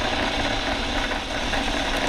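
Electric RCBS case prep station's motor running with a steady hum, its tool heads spinning with no case on them.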